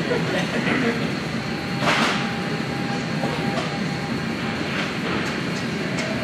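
Busy gym ambience: a steady background rumble of machines and air handling with faint voices, and a sharp clank of gym equipment about two seconds in.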